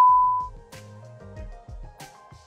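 A steady, loud test-card beep, a single pure tone, that cuts off about half a second in. Quieter background music with a rhythmic bass line follows.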